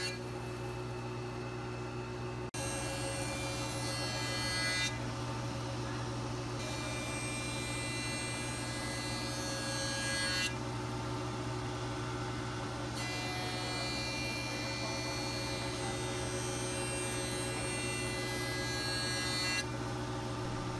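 Grizzly jointer running while walnut strips are pushed across its cutterhead to plane off old polyurethane finish. A steady machine hum that changes abruptly a few times.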